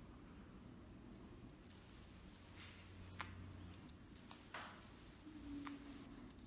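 Smartphone speaker playing the camera app's sound-wave Wi-Fi pairing signal: rapid high-pitched electronic chirps and short rising sweeps in two bursts of about two seconds each, the first starting about a second and a half in. The tones carry the Wi-Fi name and password to the security camera.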